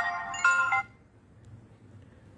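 Smartphone ringtone for an incoming call: a melody of clear stepped notes that cuts off under a second in.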